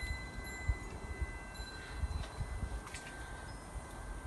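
Quiet metal chimes ringing, several high notes sustaining and overlapping, over a low rumble with a few faint clicks.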